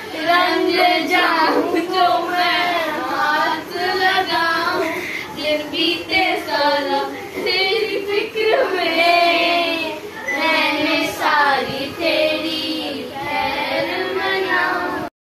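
Several girls singing a song together without instruments, their voices overlapping.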